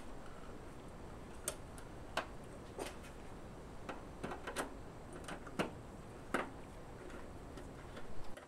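Faint, irregular clicks, roughly one every half second to second, of a screwdriver turning a screw that fastens a metal strap to the side of a kiln's steel case.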